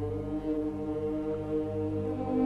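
Youth symphony orchestra holding a sustained chord over a deep held bass note, swelling slightly louder.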